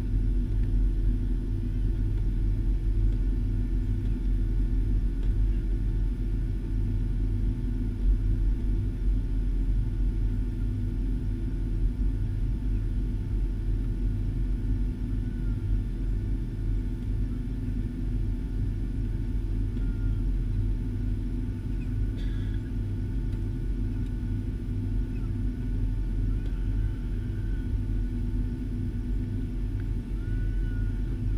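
Boeing 757 cabin noise while taxiing: a steady low rumble from the engines at idle, heard through the fuselage beside the window.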